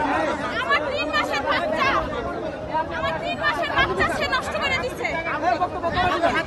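Speech only: a woman talking loudly and without pause, with other voices chattering around her.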